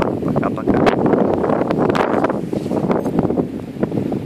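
Wind buffeting the microphone in a loud, steady rush, with a few knocks as the camera is handled and turned.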